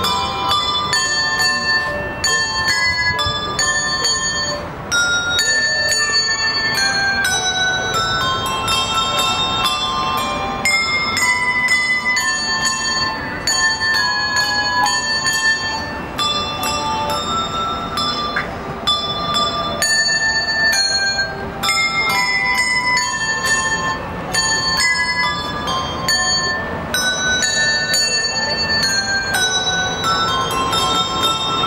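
Handbell ensemble playing a piece: many tuned handbells rung in quick succession, several notes sounding at once and ringing on into each other.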